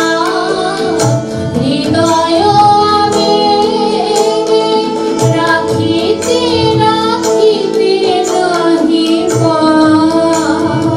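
Two women singing a Bengali song, accompanied by a harmonium holding sustained reed notes under the melody.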